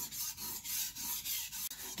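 Steel knife blade being stroked back and forth over a wet, coarse Naniwa Chosera whetstone, a gritty scraping that swells and fades with each repeated stroke. The edge is being ground on its second side to raise a burr.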